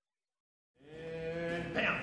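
Dead silence for most of the first second, then a man's voice comes in on a long held vowel sound that grows louder.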